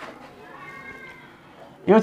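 Marker pen squeaking on a whiteboard while a curved outline is drawn: a faint, thin, wavering squeal. A man starts speaking just before the end.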